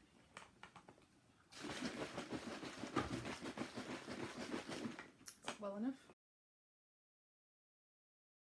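Bottled watermelon juice sloshing hard as the bottles are shaken, for about three and a half seconds, then a short vocal sound before the audio cuts off abruptly to silence.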